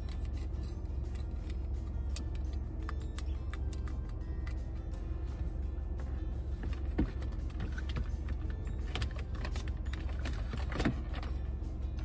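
Steady low rumble of a car's cabin, with small clicks, knocks and rattles of a charger and its cable being handled and plugged in, the sharpest knocks about seven and eleven seconds in.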